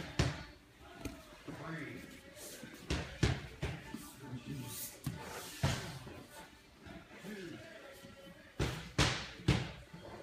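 Bodies, hands and feet thudding and slapping on foam grappling mats as two grapplers roll and reposition, several separate thuds with a cluster of three near the end; faint voices in between.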